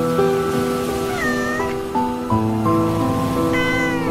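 A domestic cat meows twice, about a second in and again near the end, over steady soft relaxation music.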